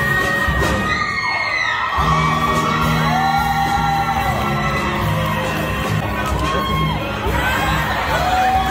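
A show choir singing with live band accompaniment, with whoops and cheers from the audience.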